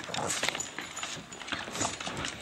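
A bulldog and a corgi play-fighting: irregular scuffling with quick clicks of claws and paws.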